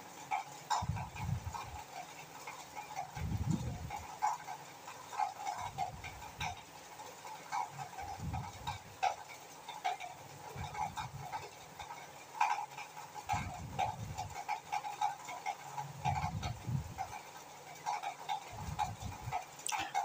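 Quiet kitchen handling noise: scattered light clicks and soft, low, muffled thumps every few seconds.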